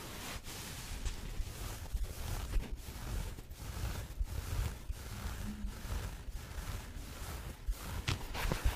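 Fingertips rubbing and scratching the soft plush side of a dry car-wash sponge, making a scratchy rustle in repeated strokes about two a second.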